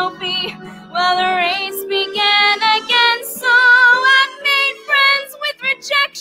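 A woman singing a musical theatre song in short phrases, with vibrato on the held notes, over instrumental accompaniment.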